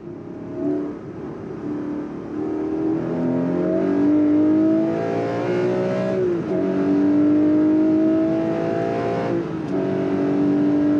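Porsche 718 Cayman GTS 4.0's naturally aspirated 4.0-litre flat-six accelerating hard, its pitch climbing as it gets louder. Upshifts drop the pitch about six seconds in and again near the end, and the engine pulls up again after each.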